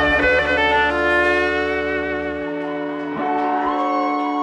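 Live string band with fiddle and guitar ringing out the closing chord of the song, the notes settling in the first second and then held. The bass stops about two and a half seconds in, and a high fiddle note comes in near the end over the fading chord.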